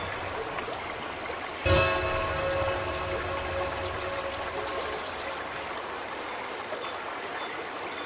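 Flowing stream water under slow solo piano. A piano note is struck about two seconds in and rings on, fading slowly.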